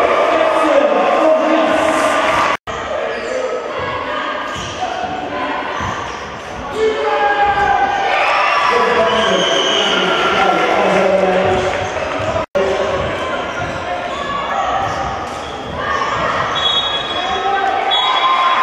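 Basketball game sound in a sports hall: a ball bouncing on the wooden court under players' and spectators' voices calling out. The sound cuts out completely twice, very briefly, at joins between clips.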